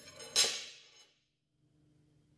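Steel drawbar dropped down through a loose-fitting steel collar onto the bench: one short metallic scraping clatter about a third of a second in, dying away within about half a second. The collar is so loose that it slides all the way along the bar.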